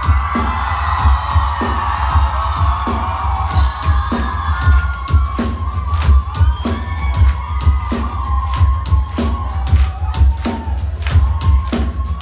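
Live rock band playing through a club PA, with a steady drum beat and heavy bass, and a crowd cheering and whooping over the music.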